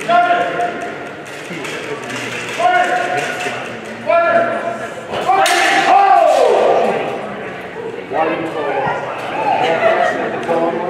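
Several loud, drawn-out shouts with no clear words, one falling in pitch about six seconds in. A single sharp strike of steel longsword blades comes about five and a half seconds in.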